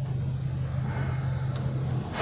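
Steady low hum of a running vehicle, heard inside its cabin.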